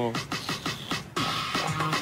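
Upbeat electronic dance music with a fast, steady beat; a fuller bass line comes in a little past halfway.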